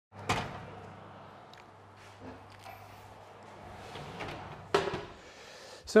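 Two sharp knocks, one just after the start and one near the end, over a faint steady hum with a few small clicks between them.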